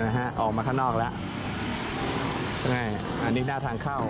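People talking in short bursts over steady street background noise.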